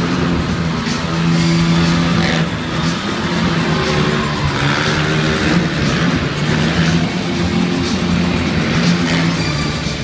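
Stunt motorcycle engines running and revving around an arena, with a van driving, over loud show music.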